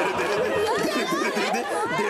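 Overlapping chatter of several voices, women's among them, talking and reacting over one another in a TV studio, with some laughter.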